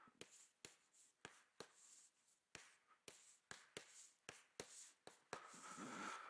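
Faint irregular taps and short scratches of chalk on a blackboard as numbers are written, a couple of strokes a second.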